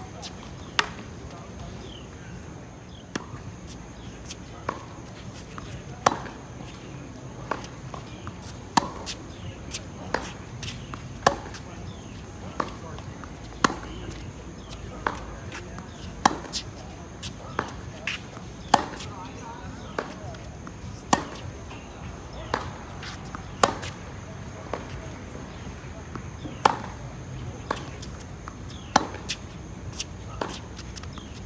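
Tennis balls struck back and forth in a baseline rally on a hard court: a sharp pop from the near player's racquet about every two and a half seconds, with softer hits and ball bounces from the far end in between.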